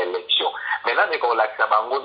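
Only speech: a person talking in French, with no other sound.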